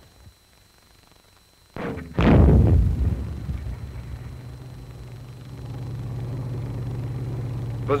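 81 mm mortar fire: one loud boom about two seconds in, dying away in a rumble, followed by a low steady drone.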